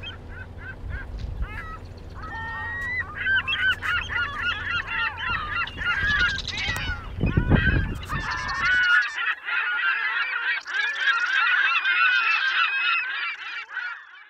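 A flock of geese honking, many calls overlapping, growing denser about two seconds in and keeping on to the end. A low rumble runs underneath until about nine seconds in.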